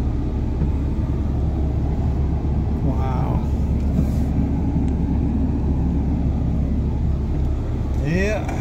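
Steady low rumble of a pickup truck heard from inside its cabin while driving on a rain-soaked road, with a short vocal sound about three seconds in.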